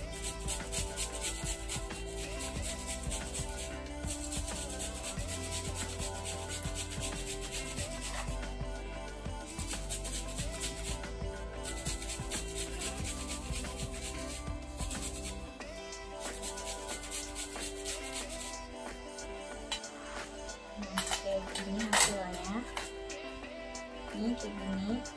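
Fresh cucumber being grated on a metal cheese grater: fast, continuous rasping strokes that pause briefly a couple of times and thin out after about fifteen seconds. Background music plays steadily underneath.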